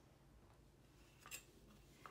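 Near silence: room tone, with one brief faint click a little over halfway through, from hands marking fabric with a pen along a metal ruler on a cutting mat.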